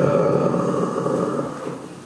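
A man's long, rough groan, drawn out close into a handheld microphone and fading near the end.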